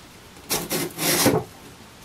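Sandpaper strip pulled out from between an acoustic guitar's neck heel and its body: two rasping strokes, the second louder and longer. The heel is being sanded to match the body's curve for a neck reset.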